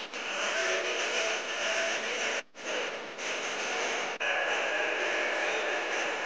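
A film teaser's soundtrack playing: a dense, noisy mix that cuts out abruptly for a moment twice, about two and a half and four seconds in.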